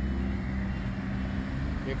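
City road traffic at an intersection: a steady low engine hum, with cars driving past across the crosswalk.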